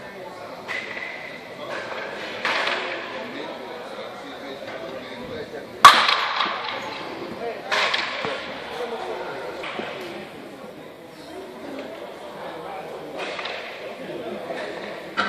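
A sharp, loud crack of a baseball striking something about six seconds in, ringing out in a large echoing hall, with a few softer knocks and faint voices around it.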